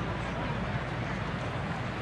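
Ballpark crowd ambience: a steady murmur of a stadium crowd with indistinct chatter.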